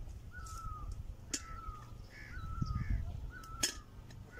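A bird calling over and over, short slightly falling notes repeated more than once a second, with two sharp clicks in between.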